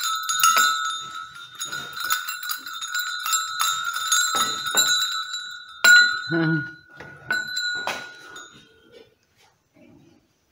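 A small hanging bell rung over and over, each stroke renewing one steady ringing note; the strokes stop a little before the end and the ringing fades away.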